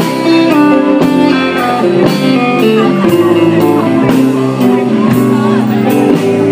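Live band playing an instrumental break: guitars over a drum kit and upright bass, with a steady beat and some bent guitar notes.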